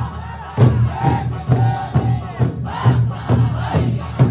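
Eisa drum dance: large barrel drums (ōdaiko) struck repeatedly by the dancers, with loud shouted calls from the troupe over amplified folk music.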